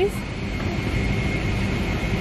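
Steady rumble and hiss of an airliner cabin, with a faint steady high whine over it.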